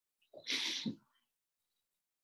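A person's single short, sharp burst of breath, lasting about half a second, with the sound of a sneeze.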